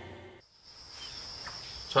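The end of a piece of music fades out in the first half-second. Then a steady, high-pitched buzzing insect chorus sets in and continues.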